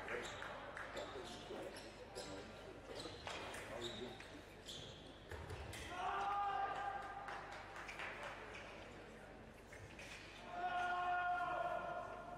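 Fencers' footwork and blade clicks, then an electronic fencing scoring machine sounding a sustained tone about six seconds in, as a touch is registered. A second, similar scoring tone comes near the end.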